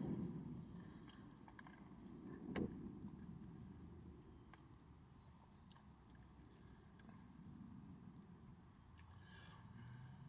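Mostly near silence. Faint swallowing of a drink from a can fades out over the first second or so, and a single short click comes between two and three seconds in.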